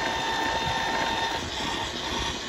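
Electric case-prep machine running with a steady motor hum while a brass rifle case is pressed onto its spinning primer-pocket tool; a thin whine stops about one and a half seconds in.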